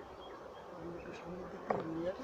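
Honeybees buzzing in the air over their hives: a steady background hum, with single bees passing close in the second half as short, louder buzzing tones.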